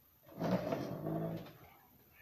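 A person's voice giving a drawn-out "mm-hmm" and a short laugh, lasting about a second from just under half a second in.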